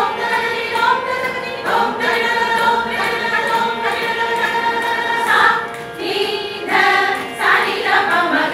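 A group of women singing together into microphones, holding long notes that change every second or two. There is a short dip in the sound about six seconds in.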